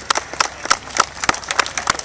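Scattered applause from a crowd of spectators lining the path: many separate hand claps at an uneven rhythm.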